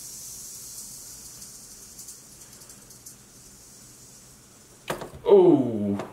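Eastern diamondback rattlesnake rattling its tail, a steady high buzz that fades out over the first few seconds, the snake's defensive warning. A sharp click follows shortly before the end.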